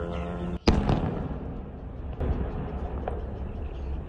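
A sudden loud explosion about half a second in, from a drone striking an oil depot, dying away into steady noise, with two fainter bangs later on.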